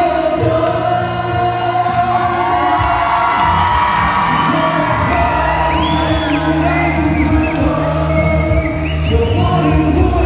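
A male singer singing live into a microphone over a loud amplified pop backing track, with the audience whooping and cheering; a short high whoop from the crowd about six seconds in.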